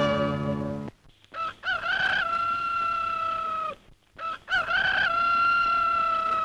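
Music ends about a second in, then a rooster crows twice. Each crow starts with a few short broken notes and ends in a long held note that sinks a little.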